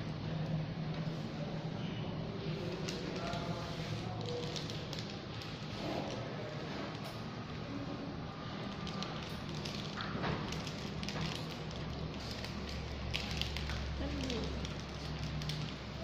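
Room background: a steady low hum with faint, indistinct voices and scattered small clicks and rustles.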